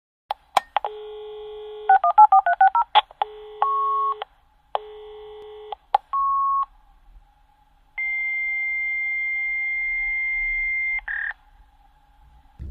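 Telephone dialing sounds: a click, a steady tone, then a quick run of about ten keypad tones, followed by several shorter tones and a long steady tone of about three seconds near the end.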